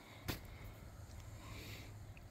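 Faint steady background noise with a low rumble, and one brief soft sound shortly after the start.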